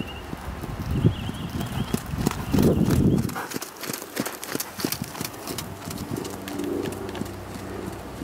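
A horse's hoofbeats on the sand arena footing as it passes close by, loudest about three seconds in, then fading as it moves away.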